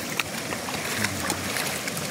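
Steady rushing noise of floodwater flowing fast over a road.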